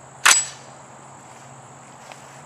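A single sharp metallic clack with a brief ring, about a quarter second in, as an AR-15 pistol is loaded.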